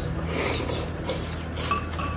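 Eating at a table: a rasping scrape, like a fork dragged across a glass plate or noodles being slurped, about a quarter second to a second in, then a light clink of cutlery on glass near the end, over a steady low hum.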